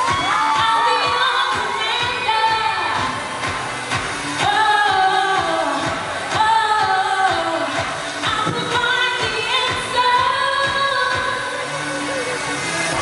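A female singer singing live into a handheld microphone, long sung phrases with bending, ornamented notes, over pop backing music with a steady beat.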